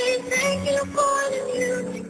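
Music: a song with a sung melody in long held notes over backing instruments.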